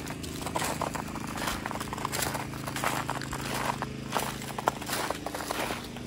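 Footsteps crunching irregularly on icy, frozen snow, over the steady low hum of a portable generator running.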